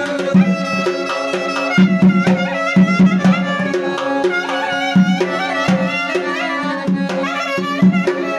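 Weltmeister piano accordion playing an instrumental folk-style melody over rhythmic bass-and-chord accompaniment, with accented bass notes several times.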